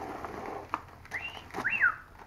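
A person whistling two short sliding notes, the second rising and then falling away. A single click and light rustling come just before.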